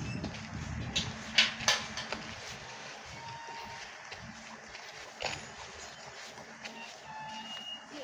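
Outdoor ambience on a dirt road: a low rumble that fades within the first couple of seconds, a few sharp knocks or clicks around a second and a half in and again about five seconds in, and a couple of brief, faint tones.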